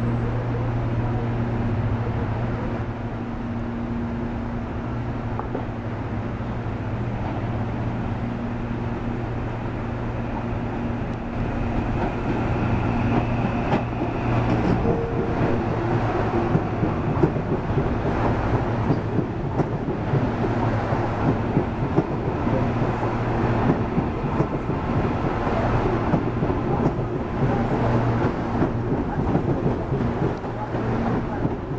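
CPTM series 8500 electric multiple unit running into a station platform: a steady low hum at first, then louder rattling wheel-and-rail noise as the cars pass close by from about twelve seconds in.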